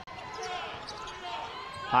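Basketball being dribbled on a hardwood court, with a few faint knocks over the steady low background noise of the arena.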